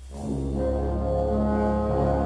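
Concert wind band playing, with brass and woodwinds holding sustained chords; the music comes in at the start and swells to full level within about half a second.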